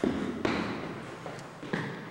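Footsteps climbing stairs in a concrete-block stairwell: about four footfalls in two seconds, each echoing briefly off the hard walls.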